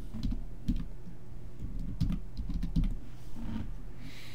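Typing on a computer keyboard: an uneven run of separate keystrokes.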